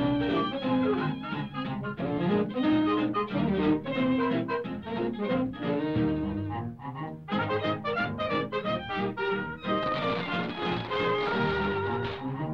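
Orchestral cartoon score with brass and strings playing a busy, bouncing tune, with a quick run of short, detached notes in the middle.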